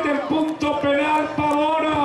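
A man's voice in long, drawn-out celebratory shouts, each held on one pitch, after the winning penalty goes in.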